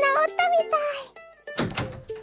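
Light children's music with steady plucked notes under a high-pitched character voice for the first second. Then the music drops out and a short, dull thump comes about a second and a half in.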